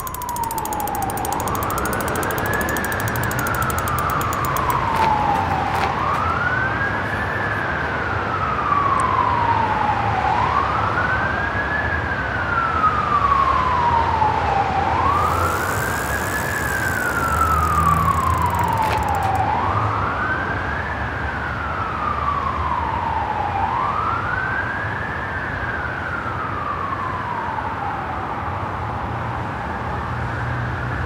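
Emergency-vehicle siren sounding a slow wail, each cycle rising quickly and falling away slowly, about one cycle every four and a half seconds, over a low rumble.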